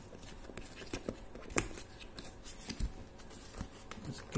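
Cardboard retail box being worked open by hand: scattered small scrapes and clicks of card sliding and rubbing, the sharpest click about one and a half seconds in.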